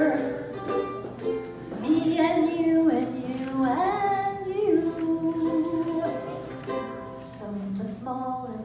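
A woman singing while strumming a ukulele, live through a microphone and PA.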